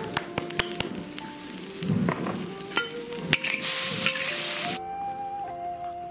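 Shrimp sizzling and spattering in a hot wok as sauce is poured in, with scattered sharp clicks. The sizzle flares up loudly about three and a half seconds in and cuts off abruptly near five seconds.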